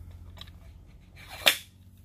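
Wooden buttstock of a Remington Model 11-48 shotgun being slid onto the action: a few faint clicks, then one sharp click about one and a half seconds in as wood and metal parts knock together.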